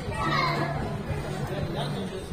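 A child's high-pitched voice calling out about half a second in, over a steady low background tone of music.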